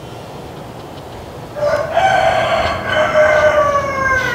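A rooster crowing once: a single long call of about two and a half seconds that starts about a second and a half in, rises slightly and then sags in pitch.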